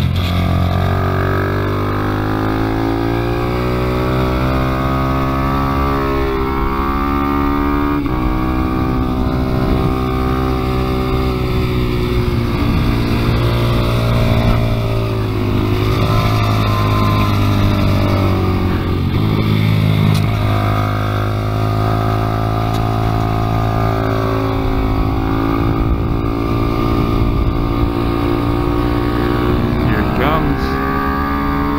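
Small single-cylinder motorcycle engine heard from on board at speed, its pitch climbing and dropping back several times as the throttle opens and closes through the corners, over a low rush of wind.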